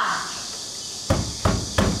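Three knocks by hand on a front door, starting about a second in and spaced about a third of a second apart.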